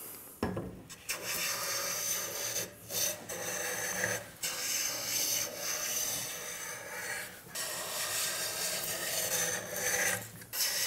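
Metal bench plane shaving a bass guitar fretboard in long strokes with brief breaks between them, planing a compound radius into the fretboard's surface.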